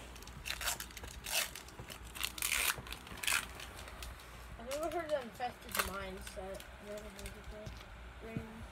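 Foil wrapper of a Pokémon card booster pack crinkling and tearing as it is ripped open by hand, in several rustling strokes over the first few seconds. About five seconds in, a voice makes a short rising-and-falling sound.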